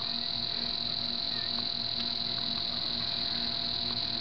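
Steady high-pitched drone of an insect chorus, holding level throughout.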